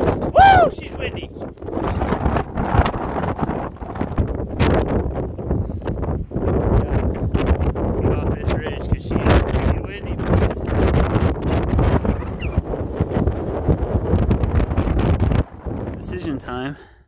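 Strong wind buffeting the microphone, a loud, continuous low rumble that mostly drowns out a man's voice; it drops off suddenly just before the end.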